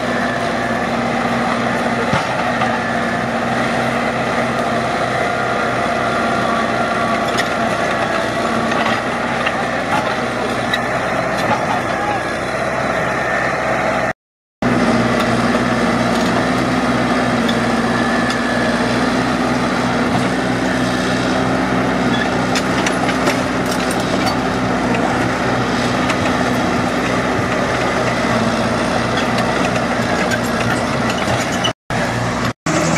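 Caterpillar crawler's diesel engine running steadily as the tracked machine pushes through brush, a constant drone. The sound cuts out for a moment about halfway through, then the engine carries on.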